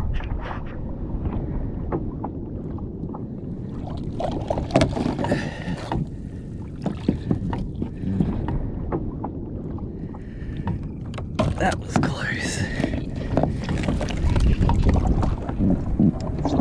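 A large mulloway (jewfish) splashing alongside and being hauled onto a plastic kayak, with many sharp knocks and clatters against the hull.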